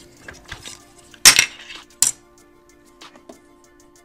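Laptop hard drive and its small metal case being handled and set down on a desk: a loud clinking clatter about a second in, then a single sharp click, with lighter ticks around them.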